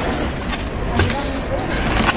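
Plastic lid of a wheeled street waste bin being lifted open, with two sharp knocks about half a second and a second in, over steady street traffic noise.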